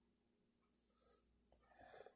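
Near silence: room tone, with one faint soft hiss about a second in.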